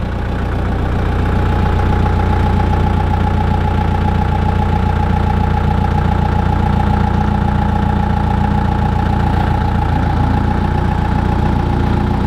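Wirtgen cold milling machine's 42.5 kW diesel engine running steadily, getting louder over the first couple of seconds, with a steady whine from the hydraulics as the machine is lowered on its leg columns.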